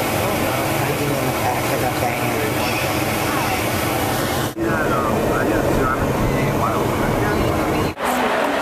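Steady rumble and hiss of a van driving, heard from inside the back of the van, with faint voices under it. It breaks off briefly about halfway through, then carries on.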